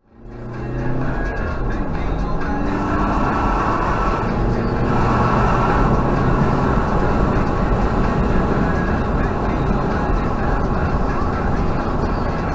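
Inside a Mazda 6, fading in at the start: engine and road noise as the car drives and accelerates, the engine note rising over the first few seconds, with steady tyre and wind noise after that.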